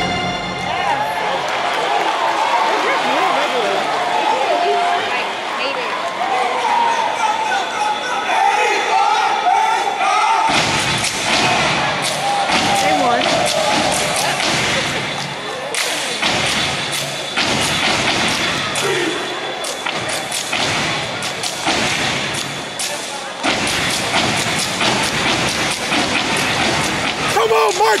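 Crowd shouting and cheering in an arena; about ten seconds in, a step team starts stepping, sharp rhythmic stomps and claps that run on over the crowd noise.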